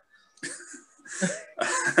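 Two men laughing in a few short, breathy bursts, starting about half a second in.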